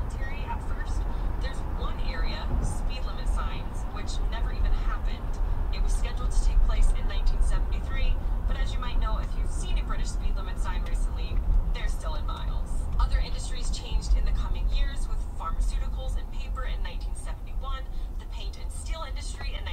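Steady low road rumble of a car driving at highway speed, heard from inside the cabin, under a voice talking.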